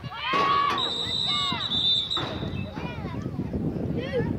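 Spectators shouting and yelling. About a second in, a referee's whistle blows a steady shrill tone for about two seconds, blowing the play dead.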